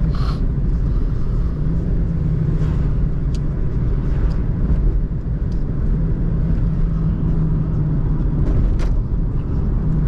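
Steady low road and engine rumble inside the cabin of a moving car, with a few faint clicks.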